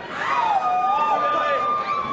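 A high-pitched voice whooping in a long call that rises and falls in pitch, over the murmur of an arena crowd between rounds.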